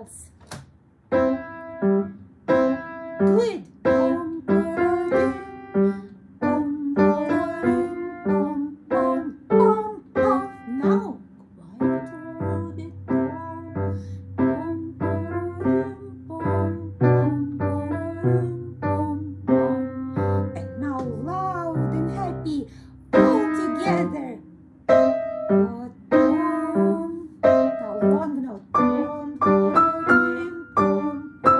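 A child playing a simple march on the piano, one firm separate note after another at about two a second. A lower bass part sounds along with it for several seconds in the middle.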